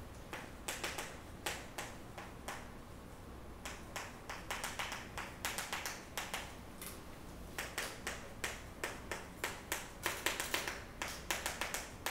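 Chalk on a blackboard as words are written: many short, sharp taps and scrapes in quick, irregular clusters, starting about half a second in, with brief pauses between words.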